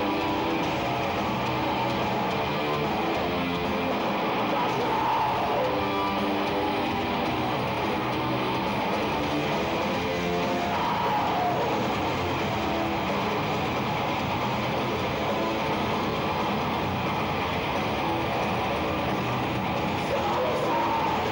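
A melodic death metal band playing live: distorted electric guitars, bass and drums at a steady, unbroken loudness, with harsh screamed vocals.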